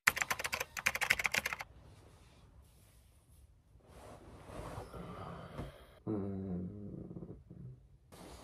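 Rapid computer-keyboard typing clicks for about a second and a half. Later, soft rustling of bedding and a short wordless vocal sound from a person near the end.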